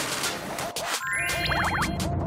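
Editing sound effect over background music with a steady beat: about a second in, a quick run of rising chime notes, then a brief wobbling, up-and-down whistle-like effect.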